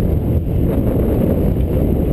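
Wind buffeting the microphone in a steady low rumble, over water rushing past the hull of an Express 27 sailboat heeled under sail.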